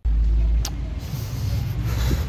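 Wind buffeting a handheld phone's microphone outdoors: a loud, low, steady rumble, with a sharp click about two-thirds of a second in.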